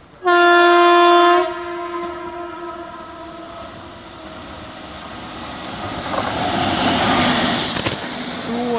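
WCAM-2P electric locomotive's horn gives one blast of about a second, then trails off. The rumble of the locomotive and its passenger coaches rolling in on the rails grows louder, peaking near the end as the locomotive draws level.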